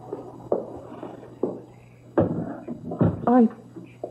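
Radio-drama sound effects: four dull knocks spaced about a second apart, over a faint low hum.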